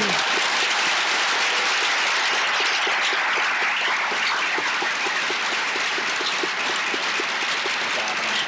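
An audience applauding steadily: dense, even clapping.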